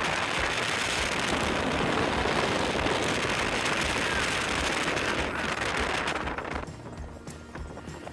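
Steady rushing, crackling road noise of a car driving on a gravel road, which dies down about six and a half seconds in as the car slows.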